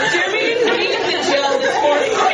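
Several people talking over one another, with some laughter.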